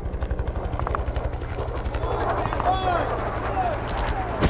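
Propeller aircraft engine sound effect: a steady drone with a fast, even pulsing, with a few short gliding tones about halfway through.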